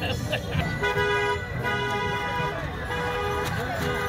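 A run of held, horn-like tones over crowd chatter: several steady notes of changing pitch, starting about a second in and stopping just before the end.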